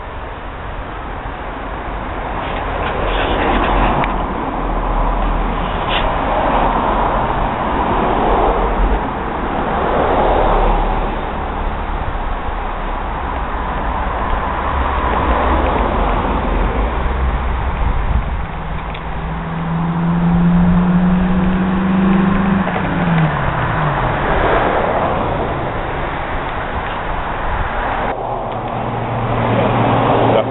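Outdoor road traffic: vehicles passing every few seconds, their noise swelling and fading. About two-thirds of the way through, one passing vehicle's engine note holds steady, then drops in pitch as it goes by.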